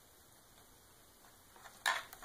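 Near-quiet handling of hoverboard wiring, then a short sharp click near the end as fingers work a small plastic wire connector loose.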